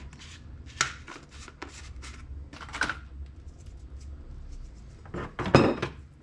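Salt being shaken from a jar onto raw chicken pieces: a few short scattered rattles, with the loudest, longer burst near the end.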